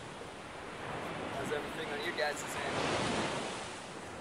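Wind rushing over the microphone, swelling to a gust about three seconds in, with faint distant voices underneath.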